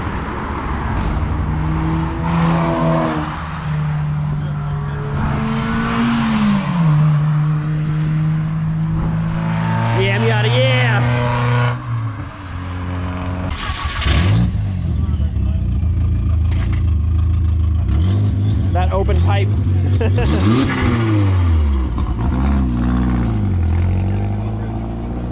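Cars accelerating hard along a road and driving past, engine notes climbing and then dropping with gear changes.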